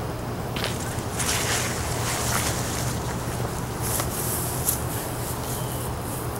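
Steady outdoor background noise with a low hum, and faint footsteps and soft rustles from a person walking on a concrete driveway.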